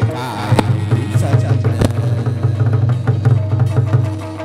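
Chầu văn ritual ensemble playing without singing: fast, dense drumming with sharp wood-clapper (phách) clacks, about half a second and nearly two seconds in.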